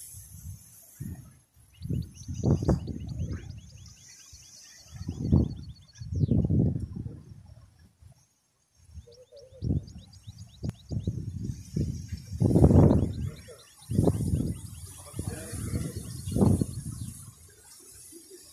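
Wind buffeting the microphone in irregular low rumbling gusts, while a bird gives two rapid trills of ticking chirps, one early on and one near the middle.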